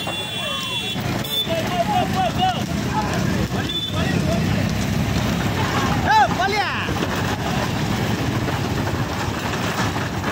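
Motorcycles riding alongside racing bullock carts: a steady rush of engine and road noise, with men's shouts over it and one loud yell about six seconds in.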